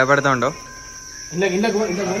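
Crickets chirring steadily at night under young men's drawn-out, calling voices. The voices break off for under a second near the middle, leaving only the crickets.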